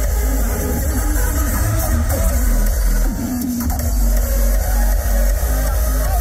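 Electronic dance music played loud over a festival's stage sound system, with a heavy, steady kick drum. The kick briefly drops out about halfway through, then comes back.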